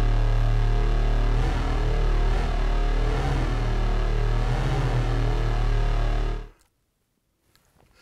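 Synthesized lightsaber hum from a Novation Peak: low, detuned sawtooth oscillators droning through chorus, delay and reverb. From about a second and a half in, its pitch wavers up and down as the mod wheel moves. It cuts off suddenly about six and a half seconds in.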